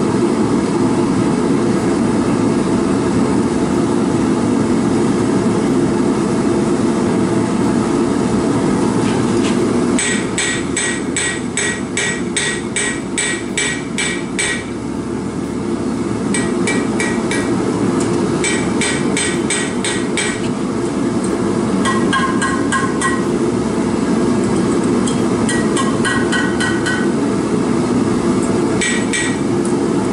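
A propane forge burner runs steadily throughout. From about a third of the way in, a hand hammer strikes hot stainless steel wire on an anvil in runs of about three or four ringing blows a second, with short pauses between the runs.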